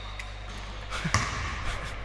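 A basketball hits the hard court once about a second in, over faint gym noise.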